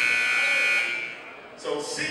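Gym scoreboard horn giving one steady buzz of about a second and a half, signalling a substitution. A man's voice follows near the end.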